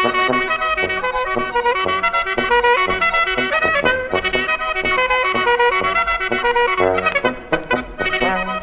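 Alpine folk brass-band music, a clarinet tune: lively clarinet melody lines over brass accompaniment, with a quick run of notes about seven seconds in.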